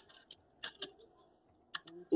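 Faint computer keyboard keystrokes: a couple of separate taps, then a quick run of three near the end.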